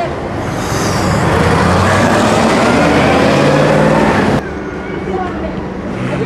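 A bus running close by, its engine a loud steady hum under broad road noise that cuts off suddenly about four seconds in, leaving quieter street sound.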